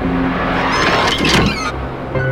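A rushing whoosh that swells up and falls away within about a second, over steady background music.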